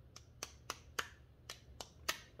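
Small coil spring being worked onto a door regulator shaft by hand, the steel parts clicking sharply against each other about six times at uneven intervals.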